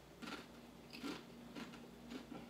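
Crunchy spicy corn chips being bitten and chewed close to the microphone: several short crunches about half a second apart.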